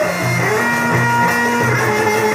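Instrumental interlude of Egyptian Sufi devotional music: a violin melody over a repeating low accompaniment.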